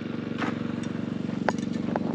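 Small gasoline engine of a drywashing machine running steadily at a constant speed, with a few faint clicks over it.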